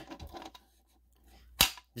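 A single sharp click about one and a half seconds in, with a few faint clicks before it: the spring-loaded plastic latch inside a Simplex break-glass pull station snapping as it is pressed.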